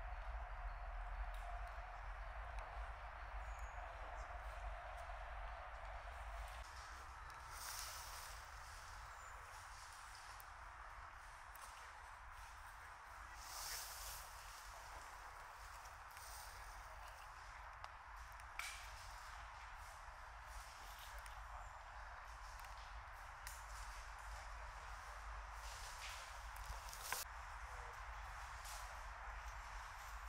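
Faint woodland ambience, a steady low hiss, with a few scattered crunches of footsteps on dry fallen leaves.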